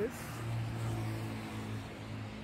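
A vehicle engine running steadily: a low, even hum.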